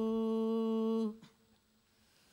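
A single male voice holding one long, steady sung note in a devotional aarti, which cuts off abruptly about a second in, leaving silence.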